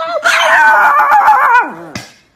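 A Chihuahua howling, its pitch wavering up and down, then sliding down and fading near the end.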